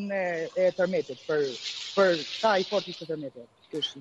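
A person speaking, with a steady hiss behind the voice from just after the start until about three seconds in.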